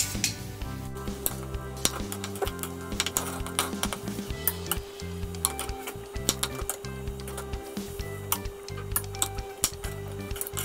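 A metal slotted spoon clinking against a steel cooking pot and a knife tapping on a wooden cutting board in many short, irregular clicks as boiled potatoes are scooped out and halved, over steady background music.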